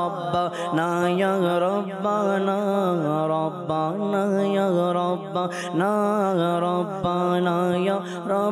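A man sings a Bengali devotional song (a naat) into a microphone: long drawn-out sung phrases with short breaks between them.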